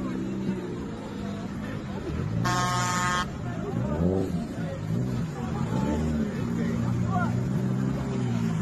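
Off-road fire truck's engine labouring and revving up and down as the truck pushes through mud and water, with a short horn blast under a second long about two and a half seconds in.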